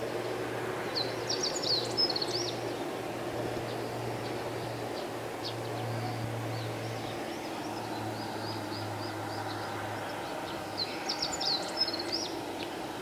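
Outdoor ambience: small birds chirping in short high bursts about a second in and again near the end, over a steady low hum that fades out near the end.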